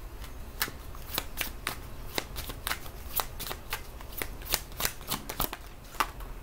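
A deck of tarot cards being shuffled by hand: a quick, irregular run of crisp card snaps and slaps, about three or four a second, that stops just before the end.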